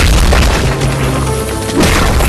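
Film fight-scene soundtrack: a heavy boom at the start and another just before the end, over dramatic background music.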